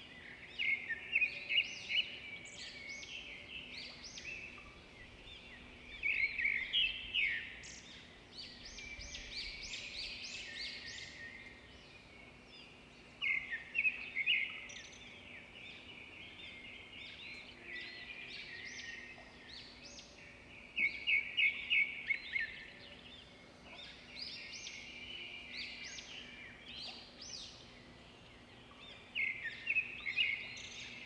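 Songbirds singing: loud bursts of rapid, repeated high chirps every seven or eight seconds, with quieter calls in between, over a faint steady low hum.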